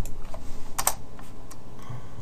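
Computer keyboard keystrokes: several separate taps, the loudest a quick pair of keys a little before one second in.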